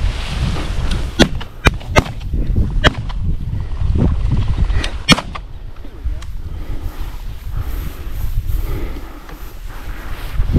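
Shotgun shots in quick succession: four sharp cracks in the first three seconds and one more about five seconds in, with wind rumbling on the microphone throughout.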